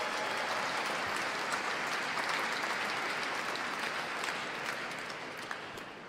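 Audience applauding steadily, tailing off near the end.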